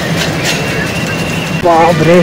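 Dense road-traffic noise from a jammed street crowded with motorbikes and other vehicles. A thin steady high tone sounds for about a second in the middle, and a brief voice comes near the end.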